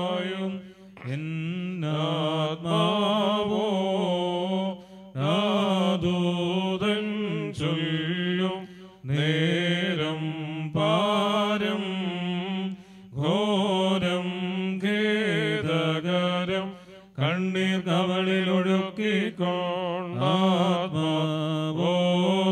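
Priests chanting a funeral hymn: slow, ornamented melody sung in long phrases, with short breaks for breath between them.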